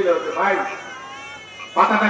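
A man's amplified speech in Bengali through a public-address microphone, breaking off briefly about a second in before resuming loudly.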